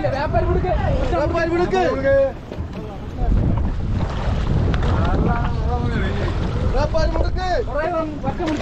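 Men's voices talking across an open fishing boat over a low rumble of wind on the microphone and the wash of sea water; the wind rumble gets stronger a little after three seconds in.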